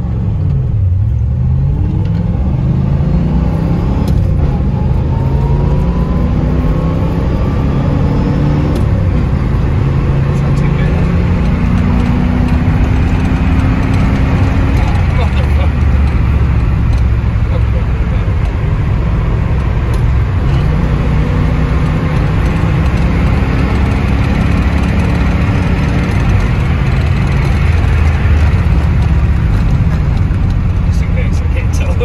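Third-generation Chevrolet Camaro driving, heard from inside the cabin: its engine note climbs and then drops back several times as the car accelerates up through the gears, over steady road noise.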